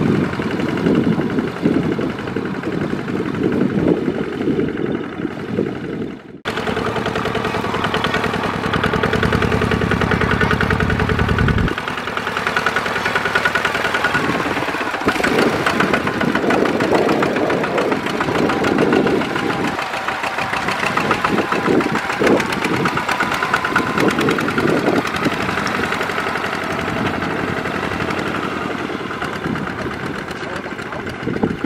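Single-cylinder diesel engines of two-wheel walking tractors running while hauling trailers through rice-field mud. The sound cuts abruptly about six seconds in and changes again near twelve seconds as the shots change.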